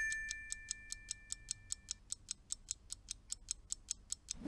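A quiz countdown-timer sound effect: steady clock-like ticking at about five ticks a second, over a two-note chime that rings out and fades over the first two seconds.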